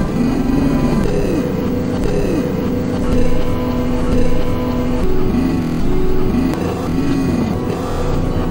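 Experimental electronic synthesizer drone: a dense low rumble under held tones, with swooping pitch arcs that rise and fall again, repeating about once a second.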